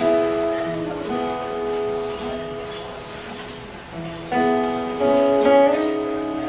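Acoustic guitars playing the instrumental opening of a song, chords strummed and left to ring, with stronger strums about four and five seconds in.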